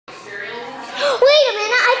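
A young child's high-pitched voice starting about a second in, swooping up and down in pitch. It is more a vocal sound than clear words.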